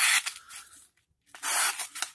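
Kershaw 6055 CQC-4KXL's 8Cr14MoV blade slicing through copy paper, making two hissing cuts with a short break in between, the second starting about a second and a half in. The edge, not freshly sharpened, tears the paper as much as it cuts it.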